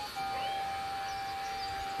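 Quiet background music: one sustained note held steady.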